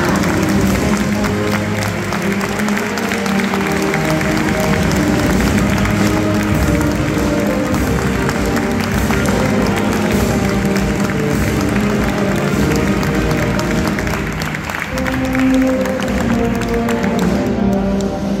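A large crowd applauding steadily over music with long held notes. The applause stops shortly before the end.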